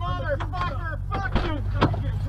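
A car's engine runs with a steady low rumble heard from inside the cabin. An indistinct voice speaks over it, and there are a couple of sharp clicks in the second half.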